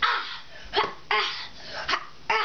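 A young child's short, breathy exclamations and laughs, about four quick bursts of excited voice during play.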